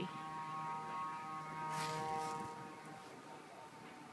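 A steady hum of several held tones that fades away a little past the middle, with two brief scratchy noises about two seconds in.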